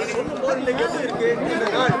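Overlapping chatter of several voices talking at once.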